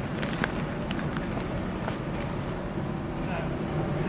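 Wind-driven millstones grinding wheat: a steady low rumble from the running stones and mill gearing, with a few light clicks and knocks in the first second.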